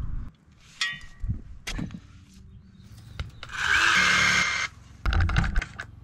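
A long-handled pick chopping into dry, rocky dirt: a few sharp strikes in the first two seconds, then a longer scraping noise of about a second, then one more heavy blow.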